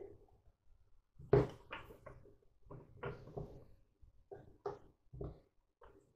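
Wooden rolling pin rolling out pastry dough on a floured wooden board: a string of soft, irregular knocks and rolling strokes, the loudest about a second and a half in.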